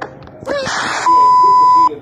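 A steady, high, unbroken test-tone beep, about a second long, the tone that accompanies a 'technical difficulties' colour-bar screen. It cuts off suddenly. Just before it comes a brief snatch of voice and noise from the programme.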